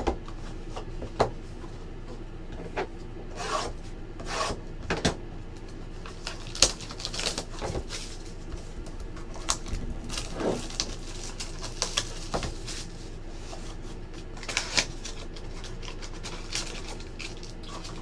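Cardboard trading-card boxes (Topps Triple Threads) being handled and opened by hand: scattered rubbing and scraping of cardboard against fingers and the tabletop, with a few sharp clicks, the sharpest about six and a half seconds in.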